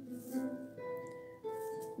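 Background music: a melody of held notes that step to a new pitch about every half second.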